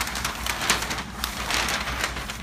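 Crackling, rustling handling noise with scattered clicks, over a low steady hum.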